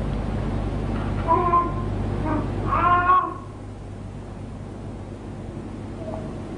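Two short, high-pitched calls about a second and a half apart. Just after the second call, a steady low hum cuts out and the background drops quieter.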